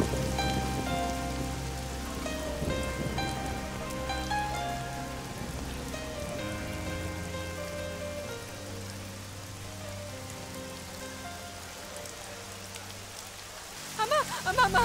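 Steady heavy rain falling, under a slow, soft film score of held melody notes over low sustained tones, the whole slowly growing quieter.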